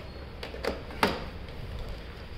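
Office chair adjustment mechanism clicking as its levers and tilt are worked: three short clicks in the first half, the loudest sharp click about a second in.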